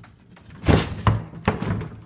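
Wooden drawer of an old cabinet sliding shut with a loud thunk about two-thirds of a second in, followed by two smaller wooden knocks.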